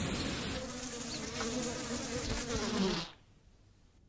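Insect buzzing in a wavering whine that cuts off suddenly about three seconds in.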